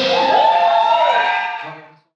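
The last chord of a live rock band ringing out after the drums stop, with sustained notes that slide up and then back down in pitch. The sound fades away to silence near the end.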